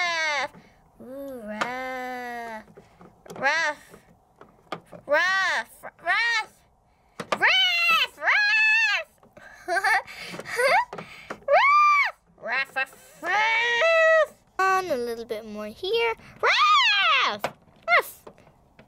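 A high-pitched human voice making more than a dozen short pretend-dog yelps and whines, each rising then falling in pitch, with brief pauses between them.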